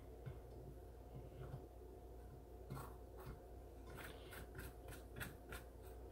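Faint scraping of a fork raking strands out of a cooked spaghetti squash half: a few light scrapes at first, then a quicker run of short scrapes in the second half.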